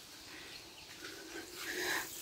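Faint, steady outdoor background noise in a rural garden, growing slightly louder near the end.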